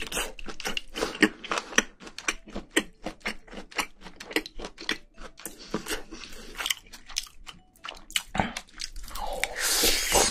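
Close-miked chewing and biting of spicy braised seafood (haemul-jjim) with bean sprouts: many quick, irregular wet crunches, several a second.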